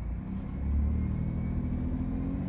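2011 Chrysler Town & Country's 3.6 L V6 engine revving up from idle as the throttle is pressed; the engine note rises about half a second in and then holds.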